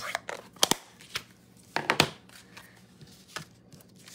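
Papercraft supplies and cardstock being handled and set down on a tabletop: a few sharp taps and clicks with light paper rustling.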